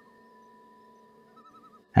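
Faint background sound bed under a narration: a steady low hum of thin held tones, with a short warbling chirp at the start and a quick run of four small warbling chirps about one and a half seconds in.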